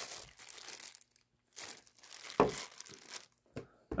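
Clear plastic bag crinkling as a USB Type-C cable is unwrapped from it, in two bursts with a short click near the end.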